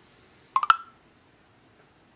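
A short electronic beep of a couple of quick tones from the Tellme voice app on a Samsung Intrepid Windows Mobile phone, about half a second in, while it processes a spoken search. The beep ends in a click.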